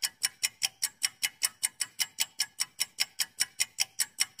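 Clock-ticking sound effect of a quiz countdown timer, a fast, even tick about six times a second, marking the time given to answer.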